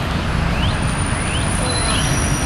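Steady low rumble of city road traffic, with a bird giving short rising chirps about every half second.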